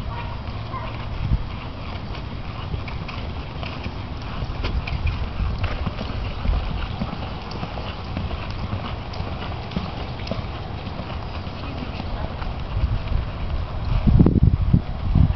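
Hoofbeats of a quarter horse mare loping on a soft dirt arena: a running rhythm of dull thuds.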